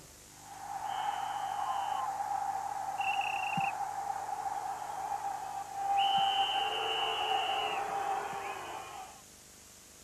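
Sound effects of a TV sponsor ident: a steady mid-pitched tone held for about eight seconds over a hiss, with three higher whistle-like tones over it, the second short and warbling. It fades out about a second before the end.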